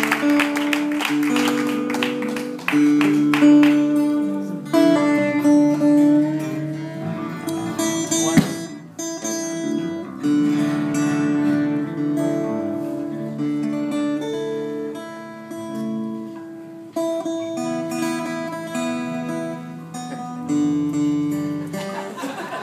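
Acoustic guitars picked between songs, single notes and chords ringing and changing pitch every second or so, not a steady song rhythm.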